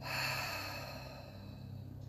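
A woman's long, slow out-breath through the mouth, like a sigh, starting suddenly and fading away over about two seconds, as part of a deep-breathing exercise.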